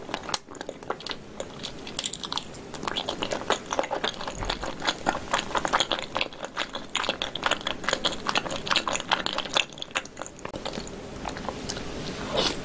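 Close-miked chewing of a mouthful of spicy-sauced pig's tail: a dense run of small clicking mouth sounds, easing off briefly near ten seconds.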